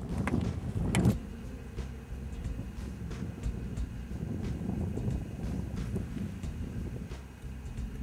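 Wind rumbling on the microphone outdoors, with rustling of clothing and grass and a couple of sharp knocks in the first second or so as the hunter handles his rifle and shooting sticks.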